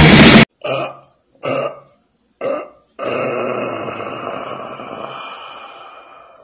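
Loud heavy metal music cuts off sharply half a second in. Three short grunts follow, about a second apart, then a long belch that slowly fades over about three seconds.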